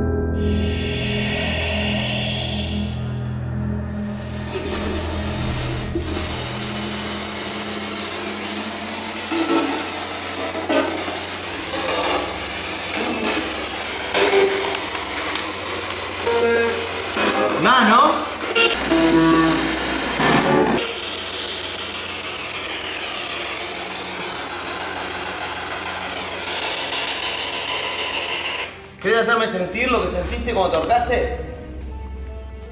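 Eerie background music for the first few seconds. Then a radio spirit box sweeping across the dial: steady white-noise static with short, chopped snatches of voice and sound breaking through, most often in the middle stretch.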